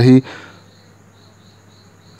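The end of a spoken word, then a quiet stretch holding only a faint, steady high-pitched tone with a softer pulsing tone beneath it.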